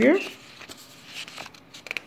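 A sheet of paper in a ring binder being lifted and turned over: a soft, faint rustle with a few light paper sounds.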